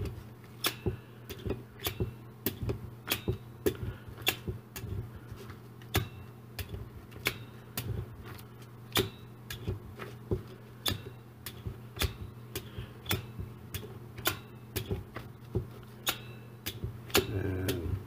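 A handheld needle meat tenderizer pressed again and again into a raw ribeye steak on a plastic sheet. Each stroke gives a sharp click, about two a second at an uneven pace.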